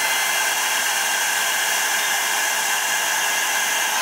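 Handheld craft heat tool running, blowing hot air over a journal page: a steady rush of air with a constant motor whine.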